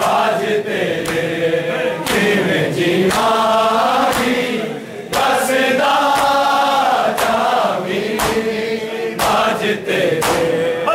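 Men's voices chanting a Muharram noha (lament) together, with hands striking bare chests in matam in a steady beat about once a second.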